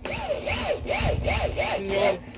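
Dog panting in a quick even rhythm of about three breaths a second. Each breath carries a rising-and-falling whine, and a short steady tone comes near the end.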